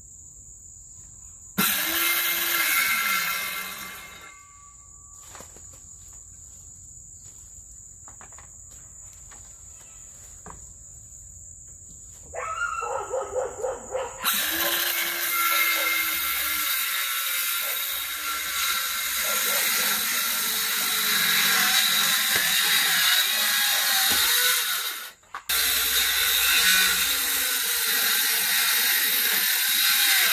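Cordless power saw cutting into the wooden floor edge of an old trailer. A short run about two seconds in winds down with a falling motor pitch. After a few stuttering starts near the middle, it cuts steadily, with one brief stop near the end. Crickets trill in the quiet stretches.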